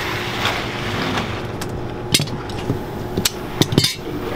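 Steady hum of an electric fan and workshop machinery, broken by a few sharp knocks: one about two seconds in and a quick run of them near the end.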